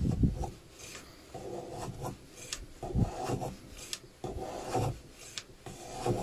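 A metal hand plane pushed on its side along a shooting board, shaving the edge of a thin strip of flamed ash. About five separate passes, each a short scraping cut.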